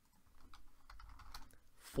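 A few faint, scattered taps on a computer keyboard as a command is entered.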